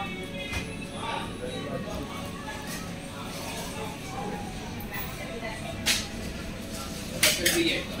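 Shop background of faint voices with clinking of dishes and cutlery. There is one sharp clink about six seconds in and a louder cluster of clinks just after seven seconds.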